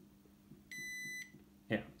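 A digital multimeter's continuity beeper gives one short, steady high beep, about half a second long, less than a second in. The beep signals that the probes have found a connection, here between the receiver's red power wire and a pad.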